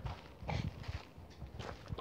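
Faint footsteps on dry, sandy gravel ground: a few soft scuffing steps.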